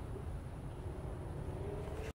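Faint, steady low outdoor background rumble, with a faint hum that rises slightly in pitch over the second half.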